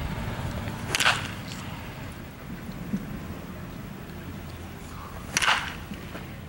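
Baseball bat striking pitched balls in batting practice: two sharp cracks, one about a second in and one near the end.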